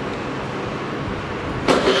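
Suzuki Let's 5 scooter's 49cc fuel-injected single-cylinder engine running with a steady hum. It gets suddenly louder near the end.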